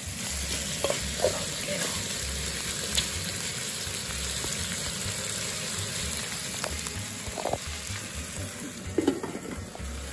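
Meat in curry sauce sizzling in a metal pot on a portable gas stove, with a metal ladle stirring and clicking against the pot now and then, twice loudly near the end.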